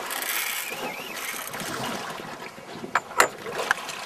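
Sea water washing against a small boat's hull, with wind on the microphone. It is loudest in the first two seconds, and a few sharp knocks come about three seconds in and once more shortly before the end.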